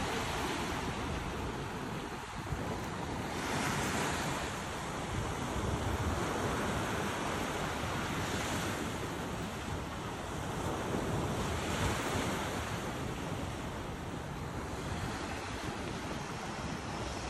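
Sea surf breaking and washing over a rocky, sargassum-strewn shore, swelling louder every four seconds or so. Wind buffets the microphone with a low rumble throughout.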